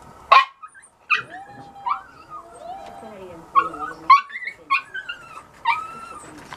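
A dog yipping and whining: a string of about seven short, sharp, high yips with lower, wavering whines between them.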